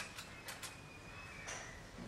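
A few faint, sharp clicks and taps from handling dissecting scissors and the specimen, over a faint thin high tone that lasts about a second and a half.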